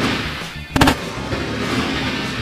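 A large balloon bursting with a sharp bang right at the start, its coloured contents spraying out, and a second sharp crack a little under a second later. Background music plays throughout.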